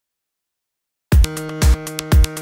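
Electronic music starts suddenly about a second in, after silence: a drum-machine kick about twice a second under a held synthesizer chord.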